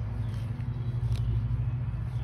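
A steady low machine hum, with one short click about a second in.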